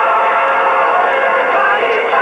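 Music soundtrack with singing, dull-sounding with no treble.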